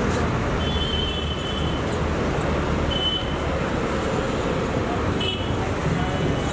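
Steady street traffic noise, with a few brief high-pitched chirps now and then.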